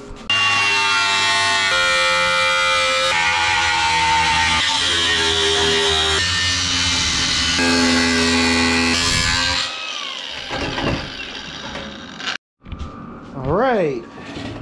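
Handheld angle grinder cutting through the sheet steel of a rusty vehicle door, a loud steady whine over grinding noise, in several joined stretches. About ten seconds in it winds down with a falling whine.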